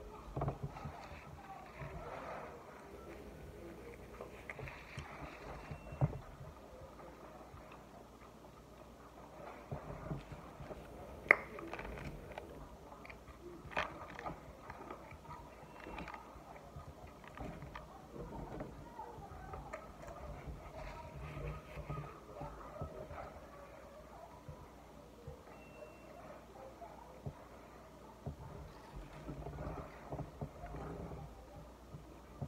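A person chewing mouthfuls of burger and French fries, with a few sharp clicks; the loudest click comes about eleven seconds in.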